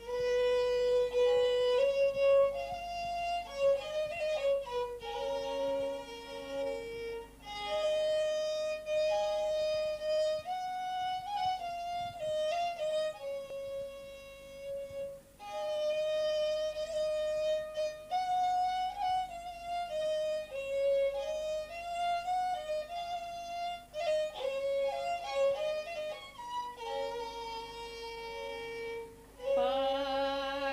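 Solo violin playing a Thracian folk melody: a single line of notes, some held and some stepping quickly, in the instrumental passage of a folk song.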